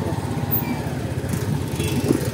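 Motorcycle engine running steadily as the bike rides along, with a low, even pulsing, heard from the passenger seat.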